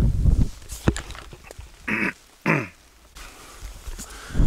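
Camera being handled, with a low rumble at the start and a click about a second in, then two short vocal sounds about two seconds in, the second falling in pitch.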